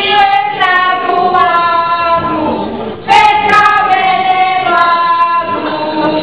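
A group of women singing a Serbian folk song unaccompanied, in long held phrases, with a short break for breath about three seconds in before the next phrase starts louder.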